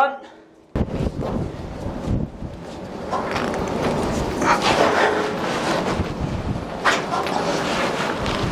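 A man grunting and breathing hard as he heaves on a long-handled socket wrench, tightening the anchor winch's mounting nuts from under the deck, with knocks of the metal tool. The sound starts suddenly about a second in.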